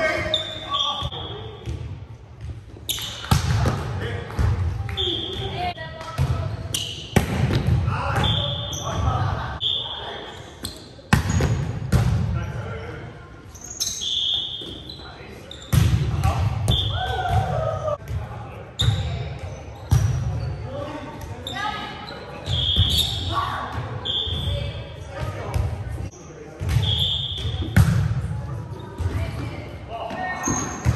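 Indoor volleyball rally: the ball is struck by hands and forearms with sharp smacks, sneakers give short high squeaks on the hardwood floor, and players call out, all echoing in a large gym hall.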